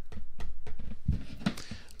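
Handling noise from a rugged plastic phone case held in the hands: light taps and faint clicks, with a dull low thump about a second in.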